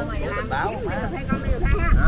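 People talking in the background, with wind rumbling on the microphone near the end.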